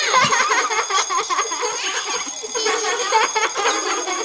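Bell ringing rapidly and continuously, an edited-in wake-up alarm sound effect.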